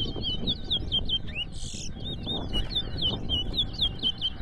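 Caged towa-towa seed finches singing in a song contest: a fast, continuous run of high, repeated down-curving notes, the song phrases that are counted to score the birds. A brief hiss about a second and a half in.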